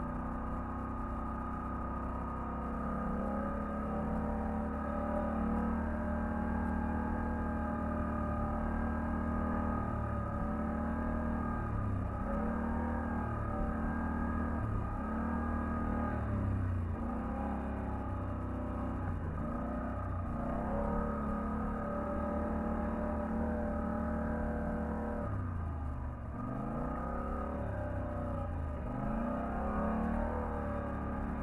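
Polaris ATV engine running along a trail, its pitch rising and falling again and again with the throttle, with a brief dip in level about three quarters of the way through.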